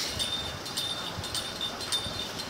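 Faint, irregular light clicks and tinkles with a thin high ringing tone that comes and goes, over low room noise.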